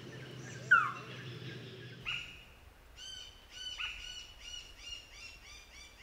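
A bird calling a series of short, repeated whistled notes that come faster and faster, starting about two seconds in. Before that there is a low steady hum and a single loud falling whistle.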